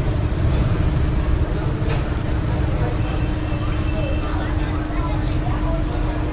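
Steady low rumble of street traffic with a constant hum running through it, and faint voices in the background.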